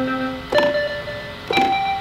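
Keyboard played with a piano sound: held chords struck about once a second, each new chord starting sharply and ringing until the next.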